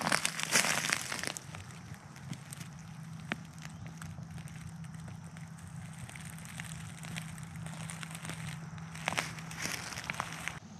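Footsteps crunching and crackling through dry leaf litter, loud for about the first second and again near the end, with quieter rustling in between. A faint steady low hum runs underneath.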